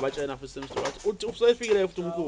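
A person speaking in isiZulu, in short phrases with brief pauses.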